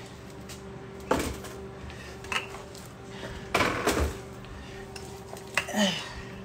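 Household knocks and clatter of things being handled and put away in a kitchen, cupboard doors and drawers closing among them: a few irregular knocks, the loudest cluster about halfway through, over a steady low hum.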